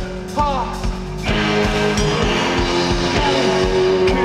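Live rock band playing, with electric guitars and drums. Sliding, arching notes ride over a steady drum beat. A little over a second in, the band swells louder with a wash of cymbals and sustained chords.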